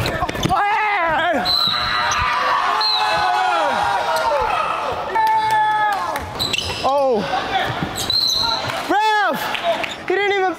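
Basketball game on an indoor hardwood court: the ball bouncing, sneakers squeaking, and players calling out over one another in the echoing gym.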